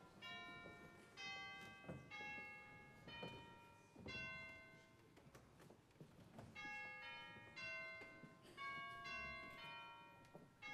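Bells playing a slow tune, a struck note every half second to a second, each one ringing on under the next.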